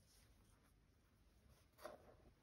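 Near silence with the faint rustle of cloth scraps being handled, and one brief, louder rustle near the end as a fabric piece is laid on the tablecloth.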